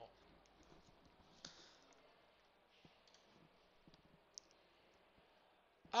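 Quiet room tone with a few faint computer-mouse clicks, the sharpest about four and a half seconds in.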